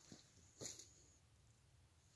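Near silence in quiet woods, with one short scuff about half a second in.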